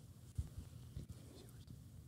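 Faint handling noise of a handheld microphone being passed to an audience member, with a soft knock about half a second in and a few lighter ones, over quiet room murmur.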